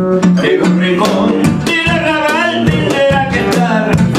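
A man singing with acoustic guitar accompaniment, the guitar strummed and picked under a held, wavering vocal line.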